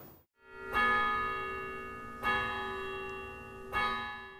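Three strikes of a bell, about a second and a half apart, each ringing on with many steady overtones and slowly fading under the next.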